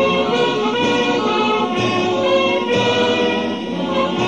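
Italian wind band (banda) playing a symphonic march: full held chords from brass and woodwinds that change every second or so.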